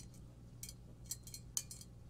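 Faint, irregular metallic ticks and clicks, about half a dozen, as a steel tape measure is handled against a triple-chrome-plated Zamak soap dish, over a low steady hum.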